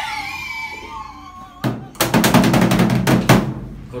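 A man laughing hard. About one and a half seconds in, a louder, harsher burst with rapid knocking takes over for nearly two seconds.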